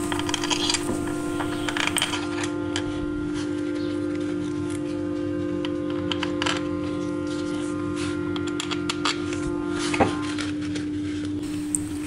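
Sparse light metallic clicks and clinks of bolts being set into an aluminium motorcycle clutch cover and started by hand and tool. Background music holding a steady sustained tone runs underneath and is the loudest thing.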